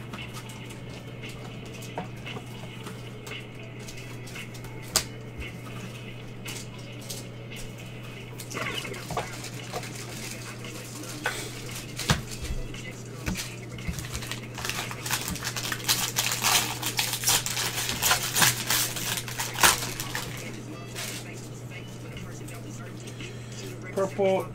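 Trading-card packs and cards being handled: scattered light clicks and taps, with a stretch of crinkling and rustling a little past halfway, likely a foil pack wrapper being opened. A steady electrical hum runs underneath.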